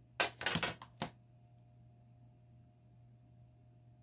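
A quick flurry of scraping taps, under a second long and starting just after the beginning, as long-nailed fingers work at a magnetic eyeshadow palette to pick up matte shadow for swatching; after that only a faint steady hum.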